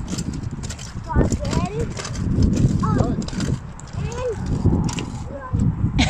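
Footsteps and a kick scooter rolling on a tarmac path, with scattered clicks under an uneven low rumble, and short arched calls now and then.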